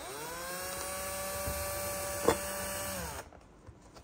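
Cordless drill driving a screw into a ceiling-lamp mounting plate: the motor spins up quickly, runs at a steady whine for about three seconds, then winds down. A single sharp click a little after two seconds in is the loudest moment.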